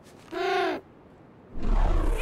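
A short hummed "mmh" from a voice, about half a second long, with a falling-then-rising pitch. Near the end, a sudden loud rush of noise with a deep rumble starts.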